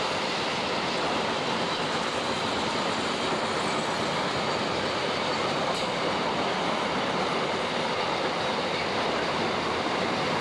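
Long container freight train rolling past, its flat wagons making a steady noise of wheels on rail.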